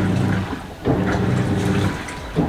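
LG top-loading washing machine agitating a load: its motor hums for about a second, drops out briefly about halfway through, then starts again in a steady back-and-forth rhythm.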